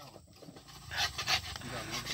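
A dodos, the chisel-bladed oil-palm harvesting tool, being sharpened by hand: a few short rasping strokes of the sharpener along its steel blade, starting about a second in.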